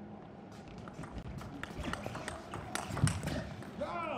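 A table tennis doubles rally: irregular sharp clicks of the celluloid ball off rubber-faced rackets and the tabletop, with sneakers squeaking and shuffling on the court floor.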